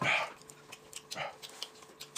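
Eating and drinking sounds at a table: a short slurp right at the start and a second, smaller one just past a second in, with small clicks of chewing, chopsticks and bowls between.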